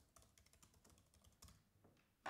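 Faint typing on a computer keyboard: a rapid run of about a dozen keystrokes as a word is typed.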